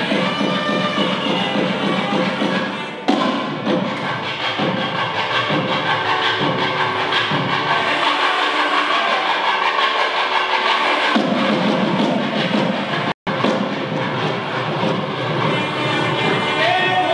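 Nadaswaram and thavil temple music: a reedy, sustained wind melody over rhythmic drum strokes. The drumming drops out for a few seconds past the middle and returns, and the whole sound cuts out for an instant about thirteen seconds in.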